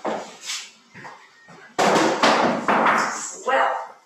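A sudden loud burst of knocking and rustling handling noise, lasting about a second, as an artwork is picked up and moved about near the microphone.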